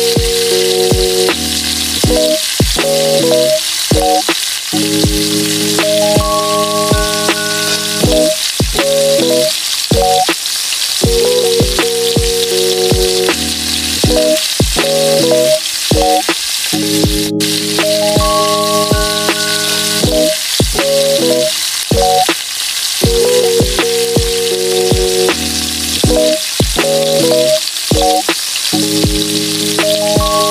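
Chopped onions, tomatoes and peppers frying in hot oil in a saucepan, sizzling steadily as they are stirred with a spatula. Background music with a steady beat plays over the sizzle.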